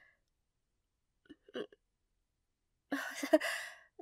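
A woman laughing briefly: a short giggle about one and a half seconds in, then a breathier laugh near the end.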